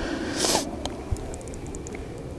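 Handling noise from the camera and gear: a short rustle about half a second in, a couple of light clicks, then a quick run of faint high ticks, over a low steady wind rumble.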